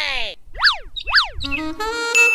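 Cartoon-style comedy sound effects: a sound falling in pitch, then two quick glides that each rise and fall. About one and a half seconds in, a short jingle of stepped notes begins.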